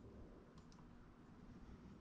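Near silence: low room tone, with two faint clicks about half a second in.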